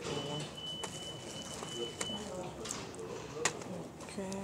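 Background murmur of voices, with a steady high-pitched tone held for about two seconds near the start and a few sharp clicks, the loudest about three and a half seconds in.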